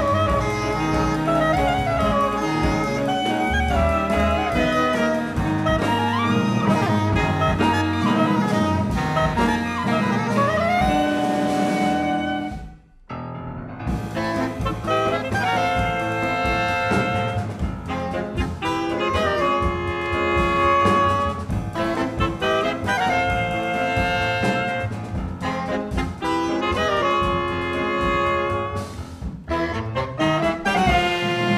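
Jazz ensemble of saxophones, bass clarinet, piano, double bass and drums playing, with a soprano saxophone to the fore. A little before halfway the band stops dead for a moment, then comes back in with short, repeated chords from the whole group.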